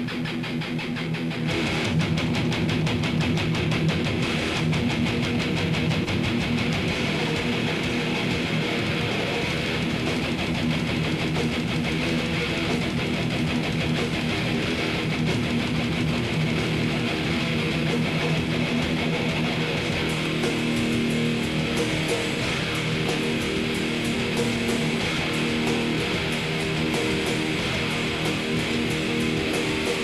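Heavy metal band playing live, with distorted electric guitars, bass guitar and fast drums at a steady loud level; the sound fills out in the upper range about a second and a half in.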